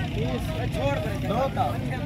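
Indistinct voices of several people talking in short bits, over a low steady rumble.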